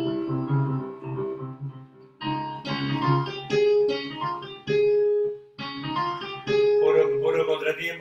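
MIDI playback of a composition in C Phrygian: a melody rising over a repeating bass line in odd meters, played by sampled keyboard and plucked-string sounds. The melody holds three long notes in the second half, with a short dip in the sound about two seconds in.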